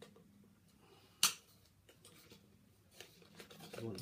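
Scissors snipping through plastic packaging ties on cardboard: one sharp snip a little over a second in, then a few faint clicks and rustles.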